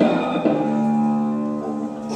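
Electric cigar box guitar played through an amplifier: the end of a strum, then a note struck about half a second in that rings on at a steady pitch, slowly fading.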